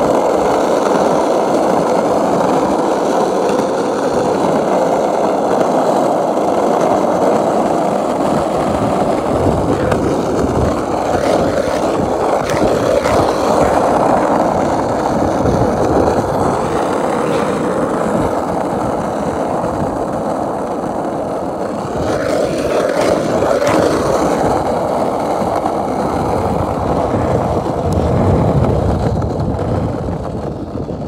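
Skateboard wheels rolling on rough, cracked asphalt down a hill: a loud, continuous rolling rumble, with a few knocks as the wheels cross cracks.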